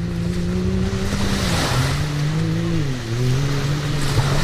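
Side-by-side off-road vehicle's engine running under throttle while driving through shallow surf: its pitch drops about a second and a half in, dips again near three seconds and climbs back. Splashing water hisses under it, heaviest around the middle.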